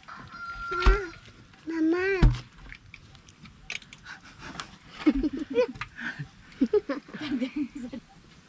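Short-handled shovel chopping into sticky clay at the bottom of a dug pit, with two sharp thuds in the first few seconds. Short voice-like calls come and go around them, busiest in the second half.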